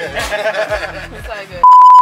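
People's voices, then near the end a loud, steady, high-pitched beep laid over the sound track like a censor bleep, which cuts off suddenly.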